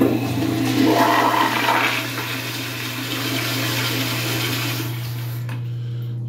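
Zurn commercial toilet flushed with its manual flushometer valve. The flush starts suddenly with a loud rush of water for the first two seconds, runs on as steady rushing and tapers off near the end.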